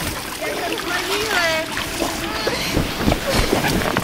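Children splashing in a small inflatable pool, with high children's voices calling out and a few sharp knocks.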